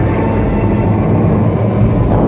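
Dubai Fountain water jets rushing, a loud steady low rumble.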